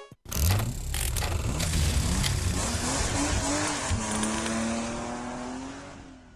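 A car engine revving, its pitch rising and falling, under music. It starts suddenly just after a brief break, settles into one steady, slowly rising note about four seconds in, and fades out near the end.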